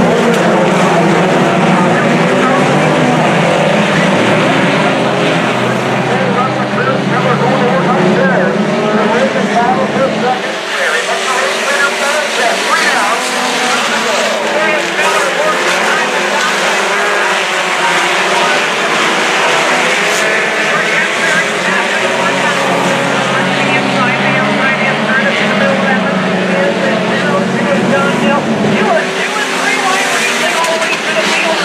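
A pack of four-cylinder sport compact race cars running together around a dirt oval, their engines revving up and down through the corners in a steady din.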